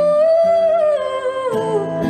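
Live acoustic music: a woman's voice holds one long wordless note, bending slightly and shifting pitch near the end, over sustained acoustic guitar notes.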